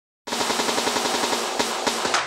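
A rapid rattling run of evenly spaced sharp hits, about a dozen a second, starting suddenly after a moment of silence.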